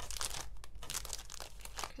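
Paper sticker sheets rustling and crinkling as they are handled and sorted through, a quick run of rustles.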